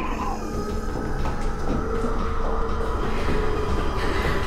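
A low, steady rumbling drone with a few held tones above it: horror-film score sound design.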